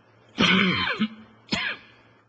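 A man clearing his throat twice: a longer rasping clear about half a second in, then a short, sharp one near the end.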